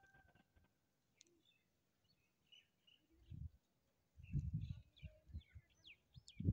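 Faint, scattered chirps of small birds over near silence, with a few low muffled bumps on the microphone in the second half, the loudest sounds.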